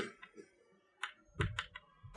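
Chalk writing on a chalkboard: a string of short, light taps and scratches as characters are written, several coming close together about a second and a half in.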